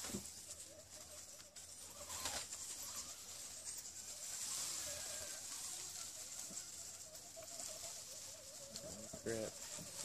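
Electric motor and gear whine of a Holmes Hobbies-powered Axial SCX10 RC rock crawler, its pitch wavering with the throttle as it crawls. There are a few knocks about two seconds in.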